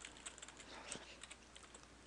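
Faint typing on a computer keyboard: a quick run of keystrokes, thinning out after the first second and a half.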